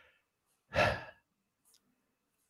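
A man's short breathy sigh, a single exhale about a second in.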